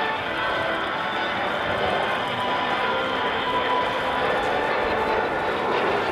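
Steady jet noise from a Kawasaki T-4 trainer's twin turbofan engines as the aircraft approaches, mixed with background voices and music.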